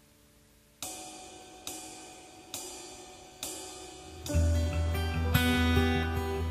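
Live worship band starting a song: after a hushed start, four evenly spaced struck hits about a beat apart, each ringing out, then the full band, with bass, drums and guitars, comes in about four seconds in.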